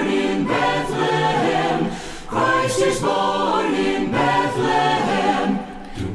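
Mixed SATB choir singing a cappella, with a brief break about two seconds in and another near the end.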